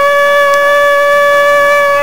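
A single loud note held at one steady pitch with a slight waver, like a wind instrument or a droning siren-like tone, running without a break.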